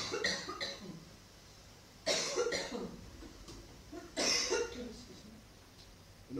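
A person coughing in three separate bouts, about two seconds apart, each starting abruptly and dying away quickly.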